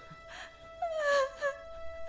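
A young woman moaning and whimpering in pain in short cries, the longest a falling moan about a second in, over a steady held tone of background music.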